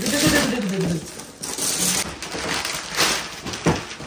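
Wrapping paper being ripped off a gift box in several tearing, rustling bursts, after a voice that trails off in the first second.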